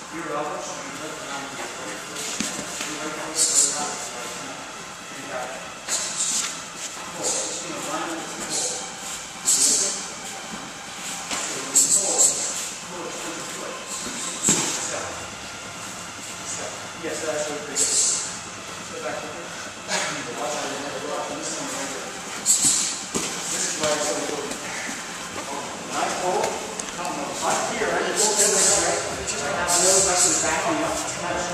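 Indistinct voices talking in a large, echoing room, with short hissing bursts every couple of seconds.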